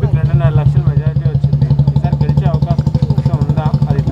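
A small engine idling close by, a steady low throb with a fast even pulse, under a man talking.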